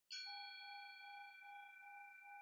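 A metal singing bowl struck once with a striker about a tenth of a second in, ringing on in several tones. The higher tones die away within two seconds while the lowest one wavers in a slow pulse. The bowl is rung to close the meditation.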